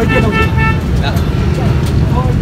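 A vehicle horn sounds one steady toot of under a second at the start, over a constant low rumble of road traffic.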